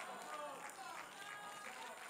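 Faint, scattered voices of a congregation murmuring in the pause between the preacher's lines.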